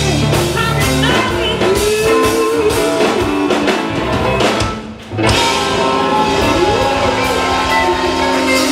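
Live blues-rock band playing, with electric guitar, acoustic guitar and drum kit, and a woman singing. The band drops out for a split second about five seconds in, then comes back in full.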